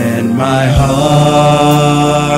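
Male vocal trio singing a gospel song in harmony through handheld microphones, settling into a long held chord about half a second in.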